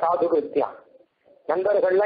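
Speech: a man's voice giving a discourse, with a brief pause about a second in.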